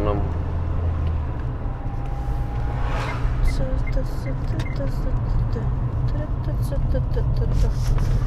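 Car engine and road noise heard from inside the cabin, a steady low rumble as the car drives slowly. A run of short, faint chirps, about two a second, sounds through the middle.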